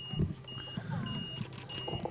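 A short, high electronic beep repeating evenly about every 0.6 seconds, with faint voices in the background.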